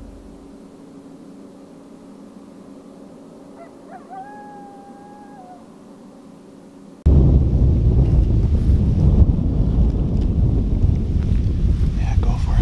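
Quiet dusk woods with one long, steady animal call about four seconds in, holding a single pitch and dipping slightly at the end. At about seven seconds a loud low rumble of wind on the microphone cuts in suddenly and stays to the end.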